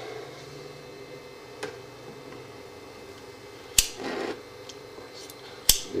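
A hand lighter struck twice, two sharp clicks about two seconds apart, the first followed by a short hiss, over a low steady hum.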